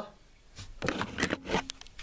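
Handling noise: a run of scuffs and sharp clicks as the camera is picked up and swung round, starting about half a second in.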